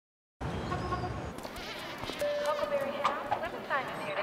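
Busy lobby ambience: a murmur of overlapping voices with assorted chirps and a held tone, starting after half a second of silence.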